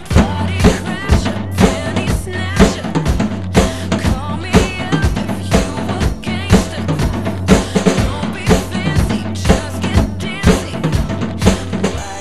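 Mapex drum kit with Sabian cymbals played in a steady rock beat on bass drum and snare, with a loud hit about twice a second, along with the pop-rock recording of the song.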